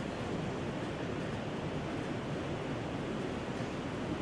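Steady, even hiss of room noise, with no distinct events.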